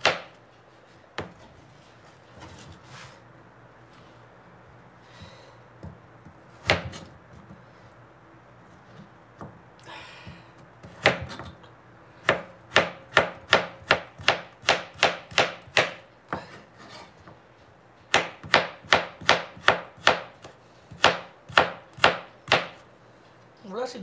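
Chef's knife chopping carrots on a plastic cutting board: a few scattered strikes, then two runs of even chops at about three a second in the second half.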